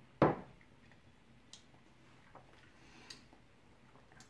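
A single short thump about a quarter second in, then a few faint clicks.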